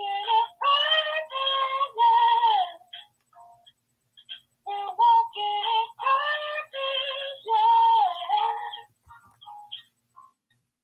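A recorded intro song: a woman's voice singing two phrases, about three and four seconds long, with a pause of about two seconds between them.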